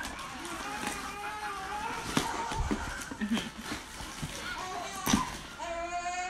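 Indistinct talking in the background, with no clear words, and sharp knocks about two seconds in and again about five seconds in.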